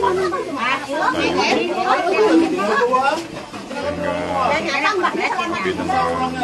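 Several people talking at once, their voices overlapping.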